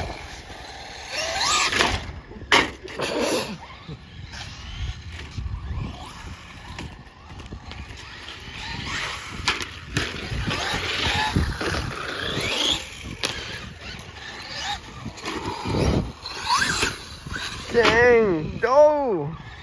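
Brushless electric RC monster trucks (Traxxas Stampede 4x4) driving on concrete: the motor whine rises and falls as they throttle up and off, over tyre noise on the pavement. A few sharp knocks come from the trucks hitting and landing on the ramps.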